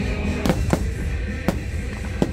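Loud show music over fireworks bursting: three sharp bangs, two close together about half a second in and a third about a second and a half in.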